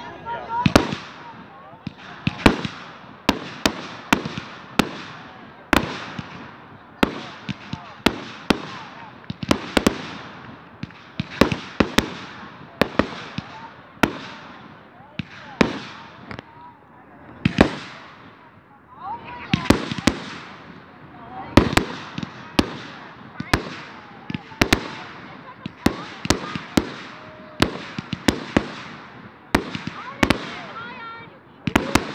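Aerial fireworks shells bursting in a steady series, a sharp bang every second or so, some in quick pairs, each followed by a fading tail of echo.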